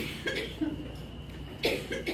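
A person coughing in two short groups, one right at the start and one about a second and a half in, over a faint steady high-pitched tone.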